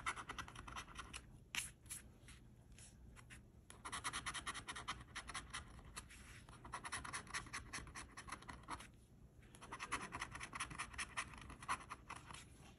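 Coin-shaped scratcher rubbing the coating off the bonus spots of a scratch-off lottery ticket in quick, rapid scraping strokes. The scraping comes in runs, with short pauses about two to three and a half seconds in and again about nine seconds in.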